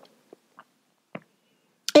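Near silence in a pause of a woman's narration, broken by three faint short clicks, before her voice resumes near the end.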